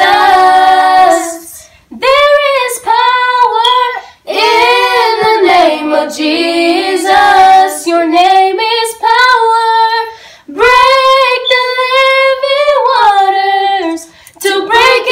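A group of young female and child voices singing a worship song together, unaccompanied, in phrases broken by short breaths.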